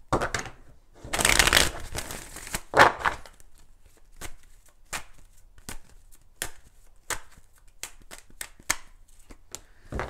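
A deck of tarot cards being shuffled by hand. There is a dense papery rustle about a second in and another near three seconds, then a long run of quick, sharp card flicks and taps.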